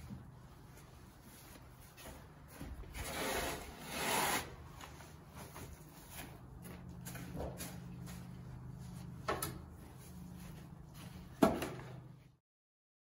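A scoop shovel scraping through wet wood shavings on a horse-stall floor, with two longer scrapes a few seconds in. A sharp knock comes near the end and is the loudest sound.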